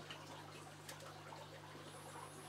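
Near-quiet room with a steady low hum and a few faint clicks from scissors working at a cable's plastic insulation as wires are stripped.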